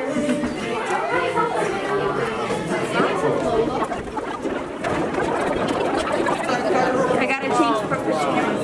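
Indistinct chatter of several voices, adults and children talking over one another, with no single clear speaker.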